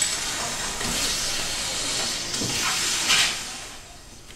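A loud, steady hiss like escaping steam that fades away after about three seconds.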